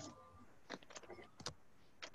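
Near silence, with a few faint, short sounds a little before the middle and again about three-quarters of the way through.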